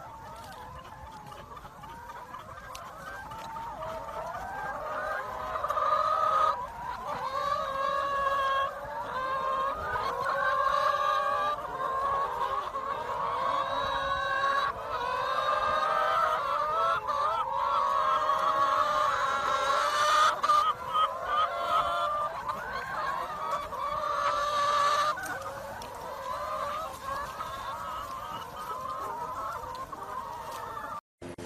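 A large flock of hens clucking and calling, many voices overlapping without a break, growing louder after the first few seconds.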